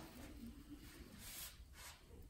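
Faint soft swishes of a flat wooden stick spreading wet epoxy resin over carbon fibre cloth, two brief strokes in the second half.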